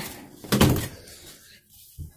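A room door being pushed shut in a small room: one loud thud about half a second in, followed by a short click near the end.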